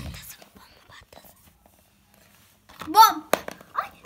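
A child whispering faintly, then a short high-pitched spoken call about three seconds in, with a single sharp tap just after it.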